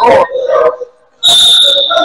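Referee's whistle blown in one long, steady, high blast starting about a second in, stopping play. Before it, players' voices call out on the court.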